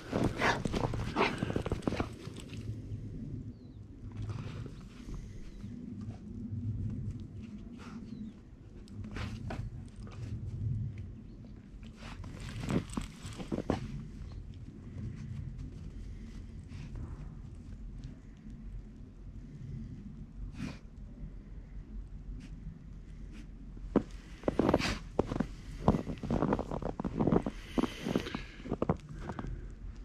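Steps crunching in fresh snow, irregular, with bursts of denser, louder crunching at the start, around the middle and in the last few seconds.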